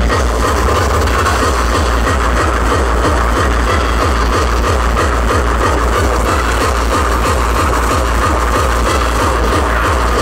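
Hardcore/terror electronic music played loud over an outdoor festival sound system, heard from the crowd. A fast, steady kick drum pounds under a dense wall of synth sound.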